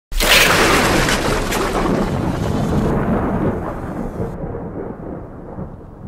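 A sudden loud burst of crackling, thunder-like noise that slowly fades away, its upper hiss cut off in two steps partway through, as if filtered down in the mix.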